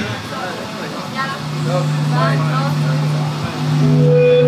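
Voices talking between songs at a rock gig, and a steady low tone from the band's amplified instruments that sets in about a second and a half in and holds, as the band readies the next song.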